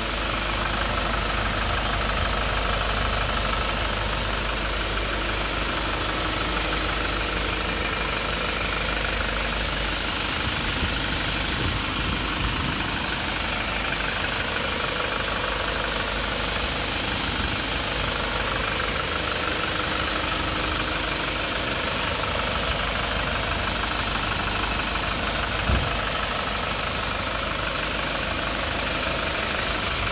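2008 Kia Sorento engine idling steadily, heard close up from the open engine bay. One brief click near the end.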